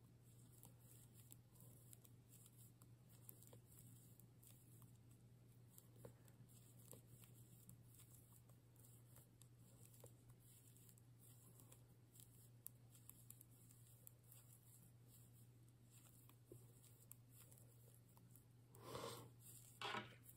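Near silence: faint ticking and rubbing of metal knitting needles and medium-weight yarn as stitches are worked, over a low steady hum, with a brief louder rustle near the end.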